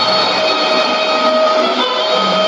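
Music from a shortwave AM broadcast, played through a Sony ICF-2001D receiver's speaker: long held notes over a steady hiss of static.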